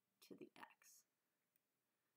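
Soft speech, the words "the x" in the first second, then near silence: room tone.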